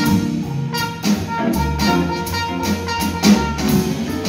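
Live jazz combo playing: a trumpet carries the melody over upright double bass and drum kit, with evenly repeated cymbal strokes and a low bass line that enters about a second and a half in.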